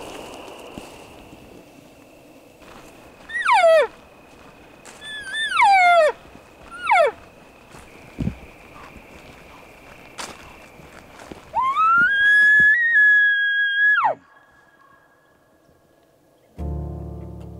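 Elk calling: three falling mews, then a longer call that rises to a high whistle, holds for about two seconds and drops off sharply, like a bull's bugle.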